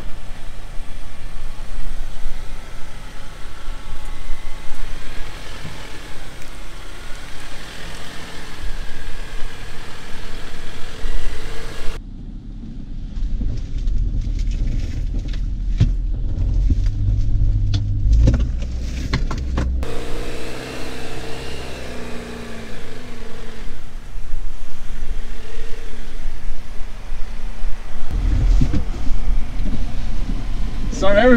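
Jeep Wrangler JL crawling over rock, its engine running at low revs under the rumble of the tyres, with several sharp knocks from the rough ground about halfway through.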